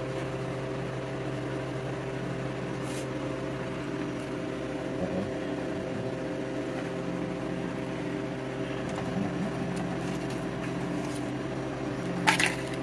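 Steady electrical machine hum of a running appliance, holding several fixed tones, with a single short click about three seconds in.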